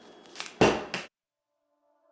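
Scissors cutting through a strip of thick Gorilla Tape: a couple of faint clicks, then one short, loud cut just over half a second in. The sound cuts off suddenly about a second in.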